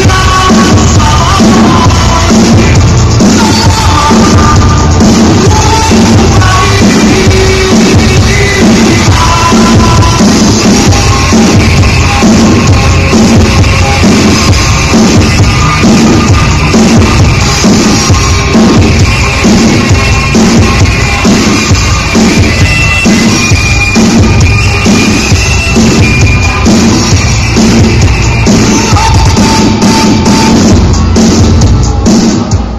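A live band playing rock music, loud throughout, with a steady drum-kit beat under bass and melodic lines.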